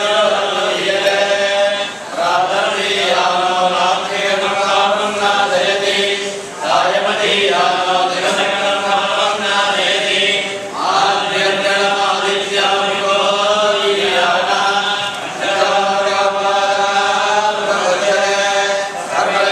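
A group of men chanting a Hindu devotional recitation in unison, in long phrases of about four seconds, each broken by a short pause for breath.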